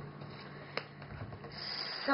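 Scrapbook album's cardstock flap brushing against the pages as it is folded down by hand, with one light tap about a second in.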